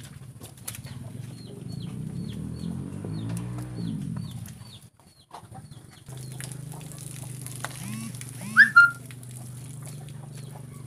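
Chickens clucking, with a run of short high chirps and a loud brief squawk a little past eight seconds in.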